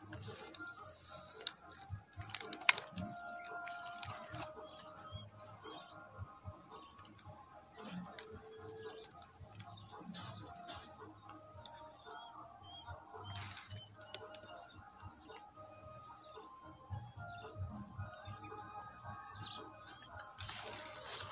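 Birds chirping in short calls against a steady high-pitched whine, with a few faint clicks.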